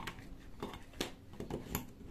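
A mains plug being pushed into a plastic power-strip socket: a few light clicks and knocks, the sharpest about a second in and another near the end.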